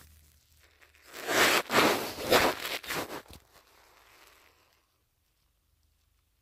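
Rustling and scraping from a handheld phone's microphone being jostled and rubbed against bedding and clothing, in several loud bursts over about two seconds, then dropping to near silence near the end.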